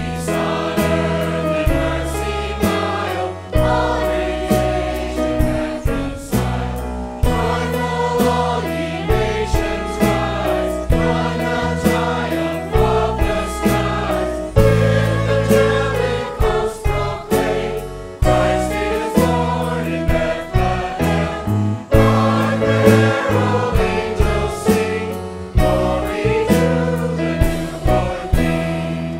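Mixed choir of men's and women's voices singing in harmony, with instrumental accompaniment that holds low notes and sharp, regular attacks underneath.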